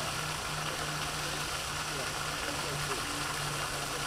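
Pond aerating fountain spraying, a steady rush of water falling back into the pond, with a low steady hum under it.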